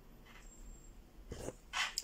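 Embroidery thread pulled through cross-stitch fabric: short rasping swishes, the louder one near the end.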